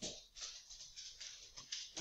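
Faint, soft clicks and rustles in an irregular run of about four or five a second.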